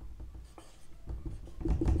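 Dry-erase marker writing on a whiteboard: short, irregular strokes of the felt tip against the board, getting louder in the second half.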